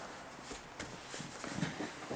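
Soft, scattered thumps and rustling of a barefoot grappler in a gi rolling on a foam mat, his feet and body pushing and sliding against a padded wall.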